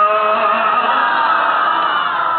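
Many voices chanting together in one long, wavering held line. Near the start they take over from a single voice holding a steady note.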